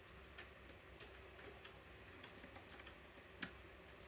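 Faint, irregular clicks and ticks of a lock pick working the pins of a Medeco M4 cylinder held under a tension tool, with one sharper click about three and a half seconds in.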